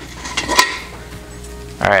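Metal clink from a stainless steel ice container being handled and opened: one sharp click about half a second in, then faint light ringing.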